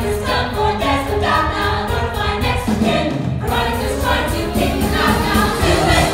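Stage musical cast singing together in chorus over band accompaniment.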